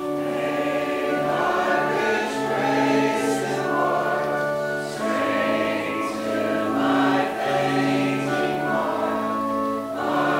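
Congregation singing a hymn together in a church, over sustained accompanying chords. The singing dips briefly between lines about five seconds in and again near the end.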